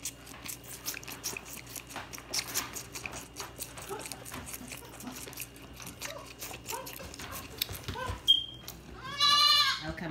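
Nubian goat kid sucking on a feeding-bottle nipple, a run of small clicking and slurping sounds, then one loud wavering bleat about nine seconds in.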